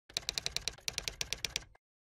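Typewriter key-click sound effect, a quick even run of about ten clicks a second while text is typed onto the screen, stopping short near the end.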